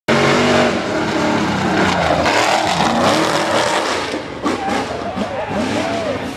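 A rock bouncer buggy's big-block V8 running at full throttle as its tyres spin and throw dirt climbing a hill, loudest at the start and easing slightly; spectators' voices are heard near the end.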